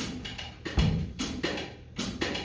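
School jazz band playing, with the drum kit's beat to the fore: sharp cymbal strikes at an even pulse and a low bass-drum hit about a second in.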